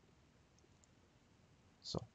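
Near silence: faint steady room hiss from the recording microphone.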